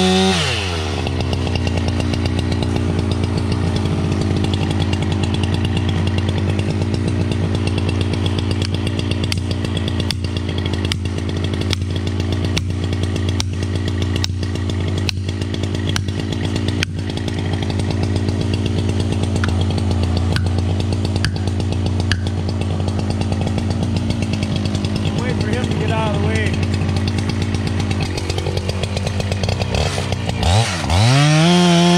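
Husqvarna chainsaw dropping from full revs to a steady idle. About ten seconds in comes a run of a dozen or so sharp knocks, roughly one every half second: blows driving a plastic felling wedge into the back cut. Near the end the saw is revved up again.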